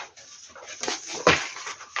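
Printed paper pages rustling and crinkling as they are leafed through: a few short rustles, the loudest a little after a second in.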